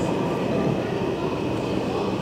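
Steady indoor shopping-mall background noise: a continuous low rumble with a faint, steady high tone over it.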